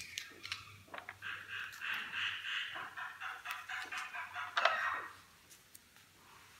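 Pages of a paper notebook being turned by hand: paper rustling and sliding for a few seconds, with a sharper flick of a page near the end.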